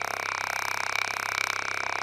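Loudspeaker driver vibrating a petri dish that holds an earthworm: a steady low buzz with higher overtones and a fast, even flutter.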